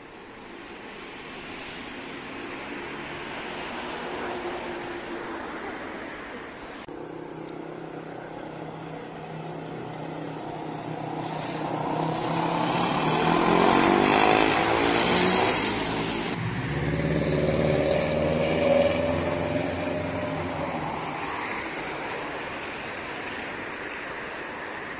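Quad bike engines passing close by on the street, revving and sweeping up in pitch as they go past, loudest about halfway through, then a steady lower engine tone fading away; background street traffic throughout.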